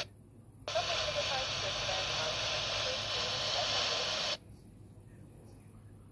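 Airband radio transmission from a handheld ICOM receiver's speaker. The squelch opens about half a second in on a hissy signal carrying only a faint, unintelligible voice, then shuts off sharply after about four seconds as the transmission ends.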